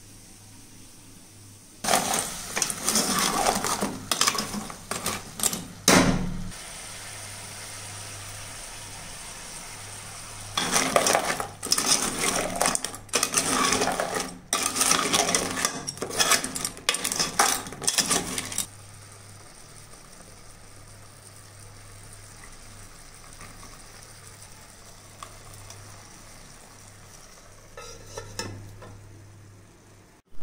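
A metal spoon stirring and scraping inside an aluminium pot of thick crab curry, with clinks against the pot's sides, in two bouts: one starting about two seconds in and lasting some four seconds, and a longer one from about ten to eighteen seconds.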